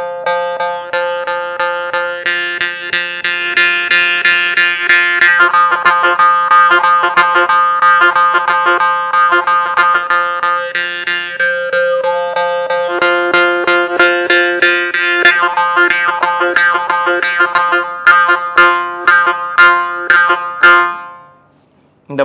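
Morsing (South Indian jaw harp) played in a fast rhythmic pattern: its steel tongue is struck again and again over a steady drone, while the bright overtones shift as the mouth changes shape. It stops about a second before the end.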